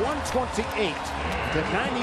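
A man's voice commenting in a sports broadcast over a steady murmur of the arena crowd, with a few short sharp knocks.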